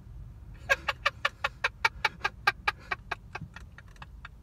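Stifled, breathy laughter in quick rhythmic pulses, about five a second, starting just under a second in and trailing off. A low steady rumble lies underneath.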